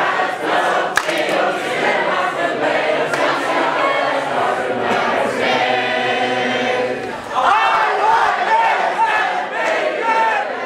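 A large crowd of untrained voices singing a three-part round a cappella, the parts overlapping, with a held chord in the middle and livelier voices near the end. A sharp knock sounds about a second in.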